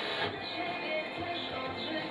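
Music received by a Unitra T7010 FM tuner, playing quietly through a speaker.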